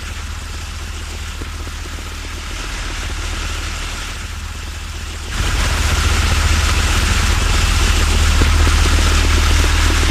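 Steady low engine rumble with a hiss over it, stepping up louder about five seconds in, like an approaching vehicle.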